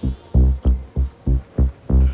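Background music score: a deep, pulsing bass beat at about three pulses a second.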